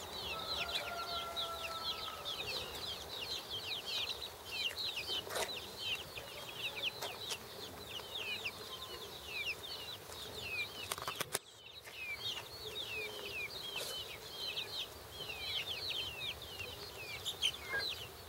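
A flock of young chickens peeping, with many short, high, falling peeps overlapping one another without let-up. There is a brief break about two-thirds of the way through.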